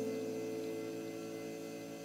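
Nylon-string classical guitar chord ringing on and slowly fading, with no new note plucked.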